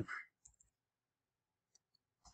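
Near silence broken by a few faint computer keyboard key clicks as code is typed: a couple about half a second in and a couple more near the end.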